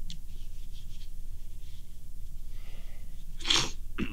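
A man blowing his nose once into a tissue, a short loud burst about three and a half seconds in, after a faint breathy sniff.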